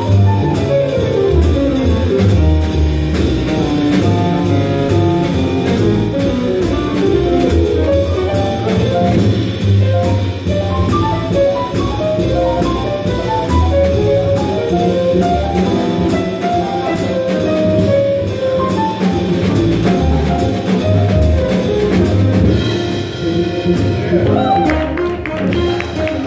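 Live small-group jazz: upright bass and a drum kit keep a steady cymbal beat under a moving melodic line. The cymbal beat drops out near the end.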